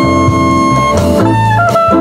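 Live jazz combo playing: a soprano saxophone holds and moves between sustained notes over electric guitar, keyboard and drums.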